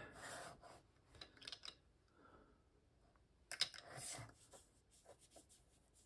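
Faint rubbing and scraping of a small watercolor mop brush being handled and stroked across watercolor paper, in a few short bursts with the loudest about three and a half seconds in.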